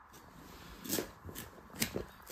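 A cleaver working on a whole plucked chicken on a cloth-covered table, with two short sharp strokes, about a second in and again near the end.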